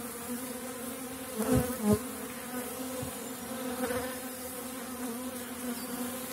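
Honeybees humming from an open hive full of bees, a steady, even buzz from a strong colony. A couple of light knocks come about a second and a half to two seconds in.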